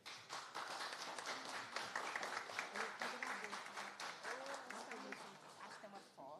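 A small audience applauding, with a few voices murmuring underneath; the clapping eases off near the end.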